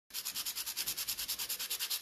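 A pencil point rubbed back and forth on a round sandpaper disc to sharpen it: a dry rasp of about ten quick strokes a second.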